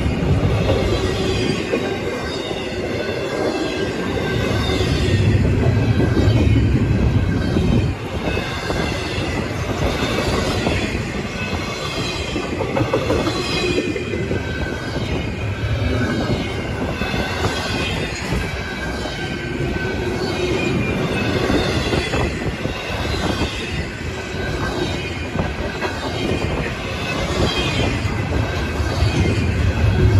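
Loaded double-stack intermodal well cars rolling past at close range: a steady rumble and rattle of steel wheels on rail, swelling and easing as cars go by, with faint high-pitched wheel squeal running through it.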